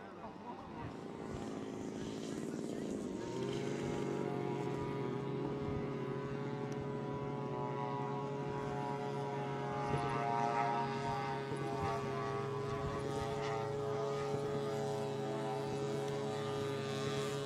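Engines and propellers of a radio-controlled scale OV-1 Mohawk model plane in flight. The drone rises in pitch and grows louder over the first three or four seconds, then holds a steady note.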